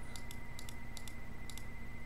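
Faint computer mouse clicks, scattered irregularly, over a steady electrical hum with a thin high whine.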